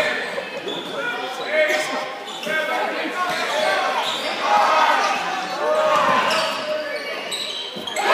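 Basketball game in a gym: a ball bouncing on a hardwood court, with players' and spectators' voices echoing in the hall.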